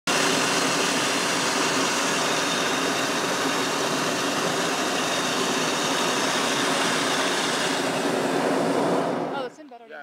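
Hot-air balloon's propane burner firing overhead, a loud steady rush that cuts off abruptly about nine seconds in.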